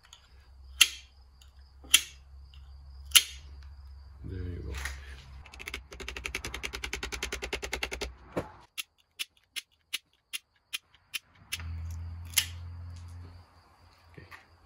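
Three loud, sharp snips about a second apart as the ends of the engine's sealing-block seals are cut off flush, followed by about two seconds of rapid clicking and then a string of single clicks.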